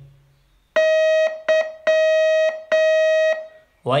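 Morse code tone keying the letter Y, dah-dit-dah-dah: one steady beep of a single pitch sounded as a long, a short and two long elements.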